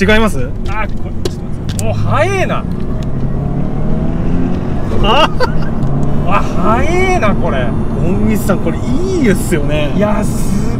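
Turbocharged Toyota 86's 2.0-litre flat-four engine running under way, heard from inside the cabin as a steady low note whose pitch steps up and down. Voices exclaim and laugh over it several times.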